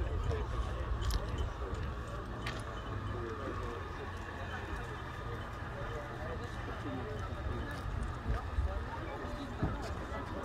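Indistinct chatter of many people talking at once, with no one voice standing out, over a steady low rumble.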